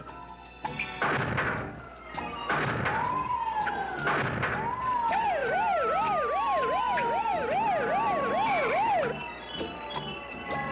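Police siren sound effect: a fast up-and-down wail, about two cycles a second, starting about five seconds in over a long, slowly falling tone. Before it there are a few short, noisy bursts.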